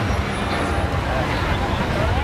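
Steady low rumble of road traffic, with faint voices mixed in.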